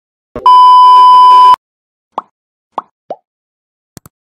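Edited-in intro sound effects: a short knock, then a loud steady beep lasting about a second that cuts off sharply, followed by three short plops, the last one lower in pitch.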